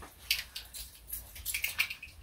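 Clothing rustling as a denim vest is pulled on over a t-shirt: several short, crisp rustles and soft clicks.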